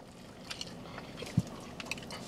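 Faint sounds of a person biting into and chewing a burrito, with a few small wet mouth clicks.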